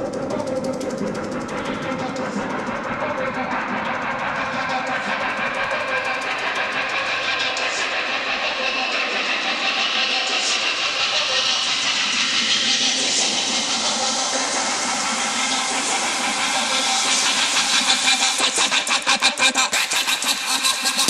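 Drum and bass DJ mix in a breakdown: the bass is cut out while a rising noise sweep builds, getting brighter and louder. Near the end a quickening drum roll leads into the drop.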